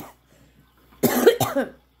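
A woman coughs briefly about a second in, a reaction to the strong smell of pork fat rendering in a crock pot.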